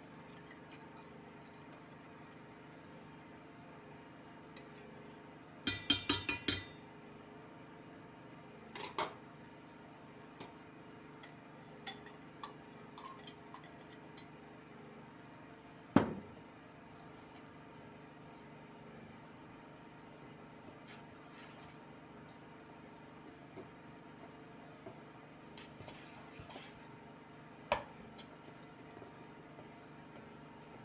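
Wire whisk and bowls clinking and knocking now and then as cake batter is poured and whisked in a stainless steel bowl: a quick rattle of taps about six seconds in, scattered clinks after, and one sharp knock, the loudest, about halfway through. A faint steady hum runs underneath.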